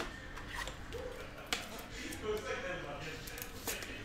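Faint handling noises of a trading card and its clear plastic holder: a few light clicks and rustles.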